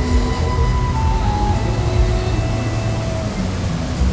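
Bellagio fountain show music playing from loudspeakers, with long held notes, over the steady rushing hiss of the fountain's water jets.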